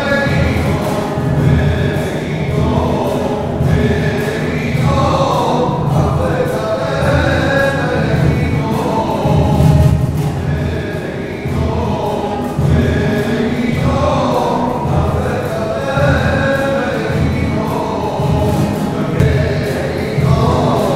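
A choir singing a communion hymn in a church, in phrases of a few seconds each, over a strong low accompaniment.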